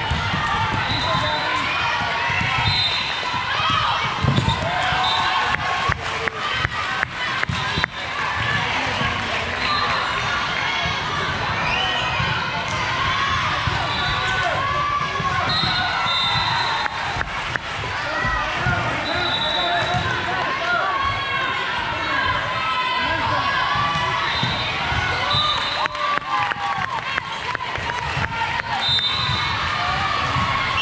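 Busy indoor volleyball gym: many overlapping voices in a reverberant hall, with sharp volleyball hits and bounces and short high squeaks throughout, thickest in clusters about a quarter of the way in and near the end.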